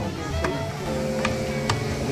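Axe chopping into a standing tree trunk, a few sharp strikes about half a second apart, cutting the first notch that sets the direction of fall. Music with held notes plays steadily underneath.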